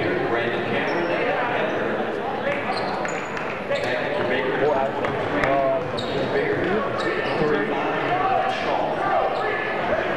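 Basketball game sound in a gymnasium: a steady murmur of crowd chatter, a ball dribbled on the hardwood court and occasional short sneaker squeaks.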